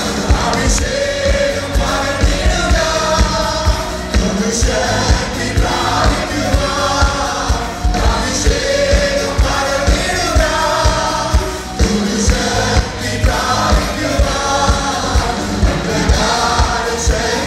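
Malayalam worship song performed live: voices singing over a band with electric guitar and a steady low beat.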